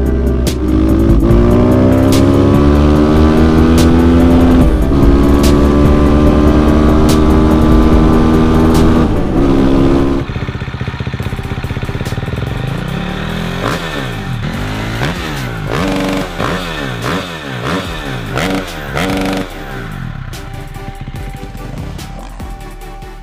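Kawasaki KLX 150 single-cylinder four-stroke engine accelerating hard through the gears. Its pitch climbs and drops back at each upshift, about five and nine seconds in. The engine has been tuned for power without a bore-up, with an aftermarket camshaft and a domed high-compression piston. About ten seconds in the sound cuts to a quieter stretch of quick rising-and-falling revs mixed with music.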